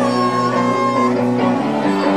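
Live rock band playing, with several electric guitars sounding sustained chords and a long held note over them, and drums.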